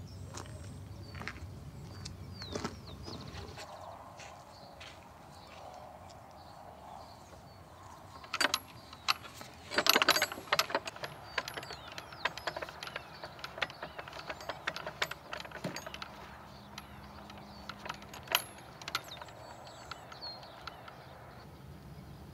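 A wooden ranch gate with a metal bolt latch rattling, clinking and knocking as people climb over it. The knocks come scattered, with the loudest cluster about eight to eleven seconds in.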